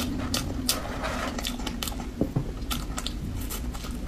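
Close-up mouth sounds of a person chewing soft cream-layered sponge cake: a run of irregular short clicks.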